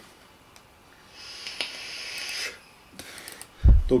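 A man taking a long drag: a breathy hiss lasting about a second and a half, then a short low puff of breath near the end as he blows out the cloud.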